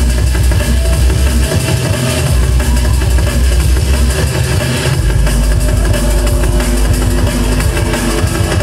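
Drum and bass DJ set played loud over a club sound system, heard from the dance floor. A fast, dense drum beat runs over a heavy sub-bass line that shifts pitch a few times.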